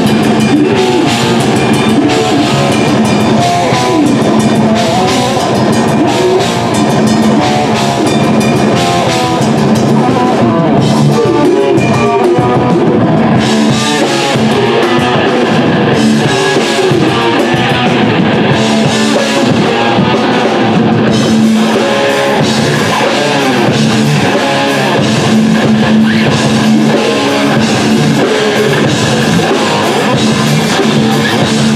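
Live thrash/crossover metal band playing loud distorted electric guitars and bass over a pounding drum kit. The top end thins out twice in the middle, then the full band comes back.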